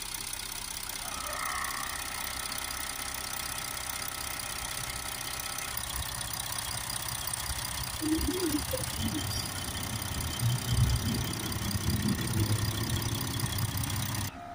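Audi 3.0 TDI V6 diesel engine idling steadily. For about five seconds near the start a higher steady tone joins it as the compressed-air gun sprays DPF cleaning fluid into the differential-pressure-sensor port.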